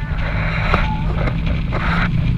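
Car on the move: a steady low engine drone with road and wind noise, growing slightly louder.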